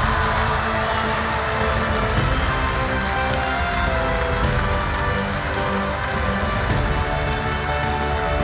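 Ceremonial music playing over steady applause from a large audience.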